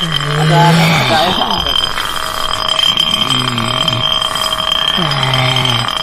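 A man's low voice in three short phrases over a steady high-pitched whine.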